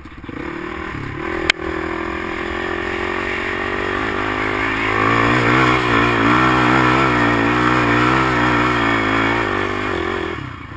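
Off-road vehicle engine revving up and pulling hard under load while climbing a steep dirt hill. It gets louder about halfway through and eases off near the end. There is a single sharp knock about a second and a half in.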